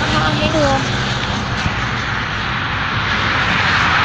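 A steady, loud rushing engine drone with a low hum running under it, after a woman's brief words at the start.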